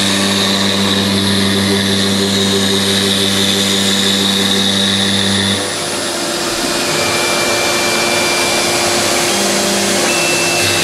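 CNC router spindle cutting a sheet, with the dust extraction on its brush-shoe hood running: a steady, loud machine noise with a high whine. Just past halfway the low hum drops away and the whine changes pitch as the cut moves on.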